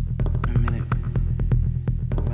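Minimal techno track: a steady throbbing electronic bass pulse under rapid, evenly spaced clicking percussion, with a short pitched sample coming in about half a second in.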